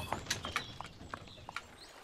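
Faint clip-clop of a horse's hooves walking while it pulls a plough: light, irregular clicks. A short high chirp comes near the end.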